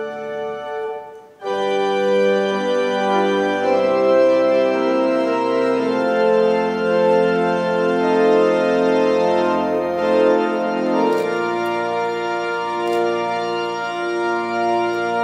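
Organ playing slow, sustained chords. It breaks off briefly about a second in, then comes back in louder and fuller, moving from chord to chord every second or two.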